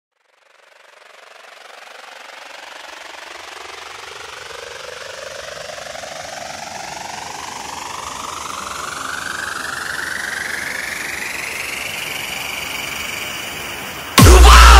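Electronic riser sound effect: a hissing whoosh that fades in from silence and climbs steadily in pitch for about twelve seconds, levelling off near the end, building up to the drop of a DJ sound-check track.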